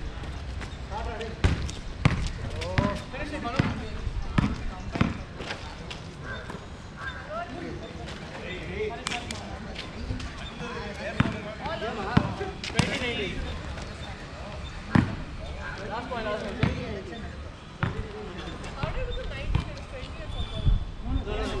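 A basketball bouncing on an asphalt court: sharp slaps under a second apart through the first five seconds as it is dribbled, then scattered bounces, with players calling out to each other.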